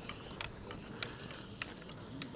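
A hand-cycle passing close by, its chain and gears whirring with scattered ratchet-like clicks from the drivetrain.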